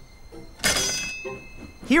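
A sudden burst of steam hiss from a cartoon steam locomotive, starting about half a second in and fading away over about a second.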